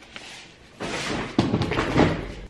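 Cardboard gift box being shifted and handled, with rustling and a thump about one and a half seconds in as it is set down.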